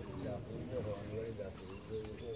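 Faint background voices of several people talking, indistinct chatter with no clear words.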